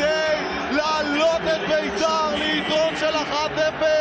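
A man's voice, football commentary, over the steady noise of a stadium crowd.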